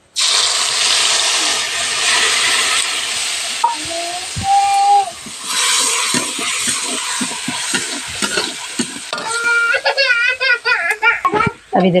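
Wet ground spice paste poured into hot oil in a metal kadhai: a loud sizzle that starts suddenly and carries on while a metal ladle stirs and scrapes the masala in the pan.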